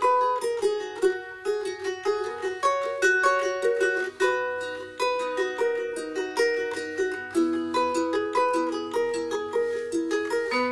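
Solo ukulele playing an instrumental, plucked melody notes and chords ringing at an even pace.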